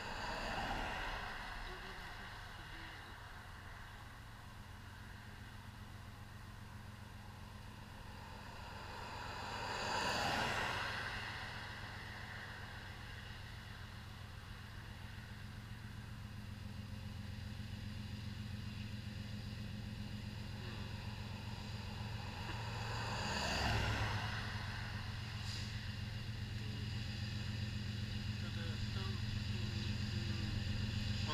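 Cars passing on the highway three times, each a swell of tyre and engine noise that rises and fades (near the start, about ten seconds in, and about 24 seconds in), over the steady low rumble of a BNSF freight train's two diesel locomotives approaching, which grows louder toward the end.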